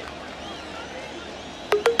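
Faint open-air football match ambience with distant voices from the pitch. Music starts abruptly near the end.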